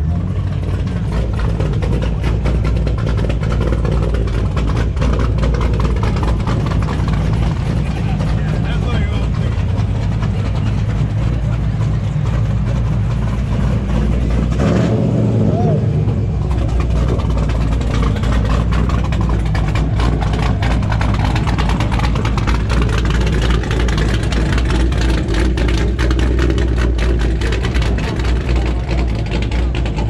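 A car engine idling steadily, low-pitched, with people talking in the background.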